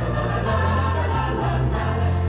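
Choral music: a choir singing over held, deep bass notes.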